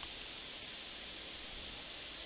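Faint, steady background hiss with no clear clicks from the cube.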